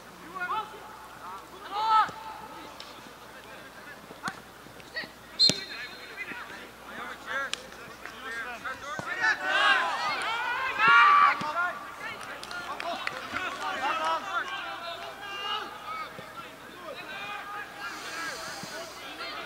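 Shouts and calls from football players and sideline spectators, heaviest about nine to eleven seconds in. A few sharp knocks from the ball being kicked come in the first six seconds.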